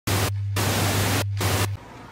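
Television static: a loud hiss over a steady low hum. The hiss breaks off twice for a moment while the hum carries on, then both cut off suddenly near the end.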